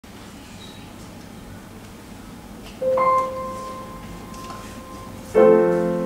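A woman sings a long held note on the word "I", starting about three seconds in and slowly fading, then a grand piano chord is struck near the end.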